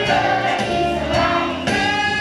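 A children's choir singing together over instrumental backing music.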